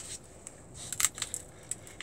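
A few small dry crackles and clicks as a strip of cork track underlay, crusted with dried adhesive, is handled and picked at with the fingers. They come in a cluster about a second in and then singly towards the end.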